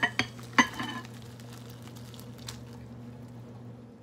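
A stainless steel pot knocking sharply against a ceramic bowl three times in the first second, then noodle soup sliding and pouring out of the pot into the bowl, over a steady low hum.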